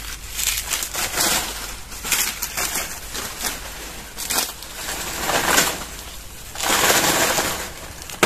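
Dry banana leaves and stalk crackling and rustling in about five bursts of half a second to a second each, with a few sharp snaps, as a partly cut banana plant is pulled down to reach its fruit bunch.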